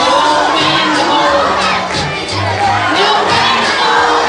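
A large crowd of children shouting and cheering over loud music with a bass line.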